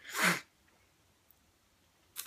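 A person sneezing once, a short sharp burst right at the start.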